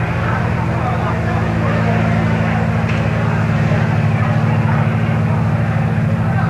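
A live rock band's amplified guitars and bass holding a low, steady drone through the venue PA, with crowd noise mixed in.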